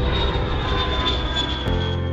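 Airplane fly-by sound effect, a loud rushing engine wash with a slowly falling high whine, laid over music; a regular beat comes in near the end.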